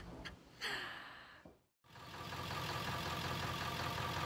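A breathy sigh, then after a cut a Ford Super Duty box truck's engine idling steadily.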